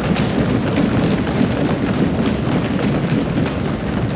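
Members of an assembly applauding by thumping on their wooden desks: a dense, continuous patter of many hands.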